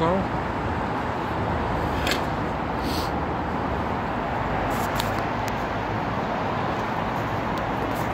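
Steady road traffic noise from a busy main road, an even rushing hum of passing vehicles, with a few light clicks near the middle.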